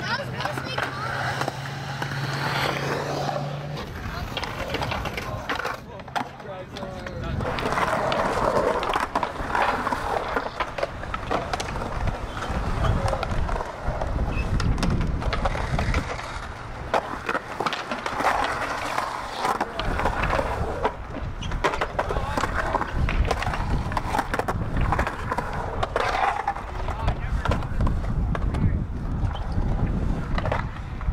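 Skateboard wheels rolling on a concrete skatepark bowl, with many sharp clacks from the board and trucks. It grows louder about eight seconds in.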